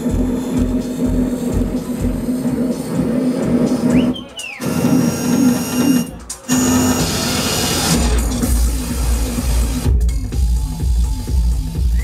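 Techno played by a DJ on a club sound system, with a kick drum about twice a second. The kick fades out about three seconds in, the music drops out briefly twice in the middle, and the kick comes back heavier about eight seconds in.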